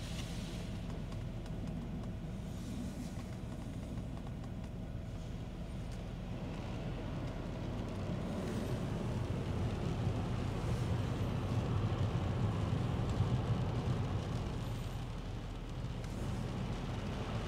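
Automatic soft-touch car wash working over a car, heard muffled from inside the cabin: a steady low rumble of wash machinery and water on the body, swelling louder in the second half.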